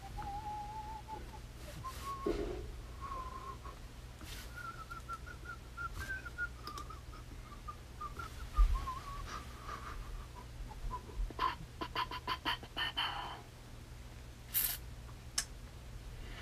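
A person softly whistling a wandering, unhurried tune. A single thump comes about halfway through, and a quick run of sharp clicks follows near the end.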